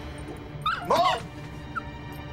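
A small dog giving short, high cries that sweep up and down in pitch, a cluster about half a second in and one short one near the end, over soft background music.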